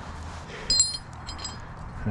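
Metal climbing hardware, carabiners and a mechanical rope device, clinking as it is handled: one sharp ringing clink a little under a second in, then a few lighter clinks.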